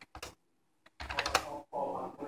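Computer keyboard keystrokes: a few quick taps, a pause of about half a second, then a faster run of typing from about a second in.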